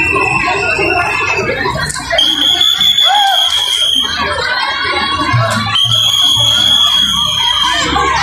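Crowd chatter and shouting with music. A shrill, high piping note is held for about two seconds at a time, three times, stepping up in pitch after the first. Low drum beats sound under it.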